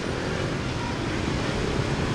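Steady city street traffic: cars and motor scooters running past on a multi-lane road.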